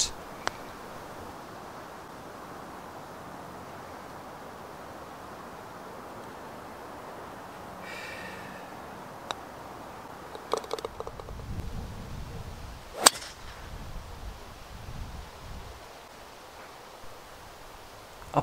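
Quiet outdoor ambience with a steady hiss, broken by a faint tap near the start, a few soft clicks, and a single sharp click about 13 seconds in, the loudest sound: a putter striking a golf ball on the green.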